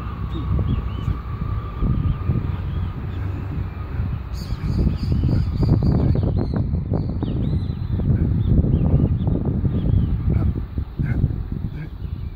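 Outdoor ambience dominated by an uneven low rumble on the microphone, with birds chirping now and then.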